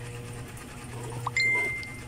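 A phone's Facebook Messenger notification chime: a single high ding a little past halfway through, ringing on and slowly fading.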